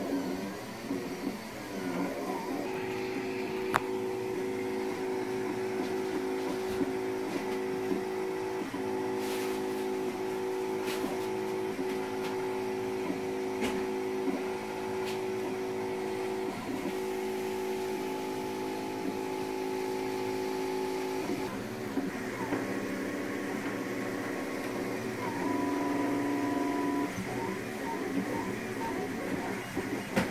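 Monoprice Select Plus 3D printer running a print: its motors give a steady whine of several held pitches over the cooling fan's whir, the pitches shifting a few times near the end, with a few faint clicks.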